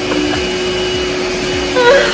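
Electric stand mixer running at a steady speed, its motor humming evenly as the beaters whip egg whites for meringue, still short of stiff peaks.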